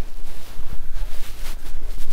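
Wind rumbling on the microphone, with light splashing from a hooked bass swirling at the water's surface.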